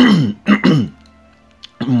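A man clears his throat with a short cough in the middle of his narration. This is followed by a pause of about a second in which only faint background music is heard.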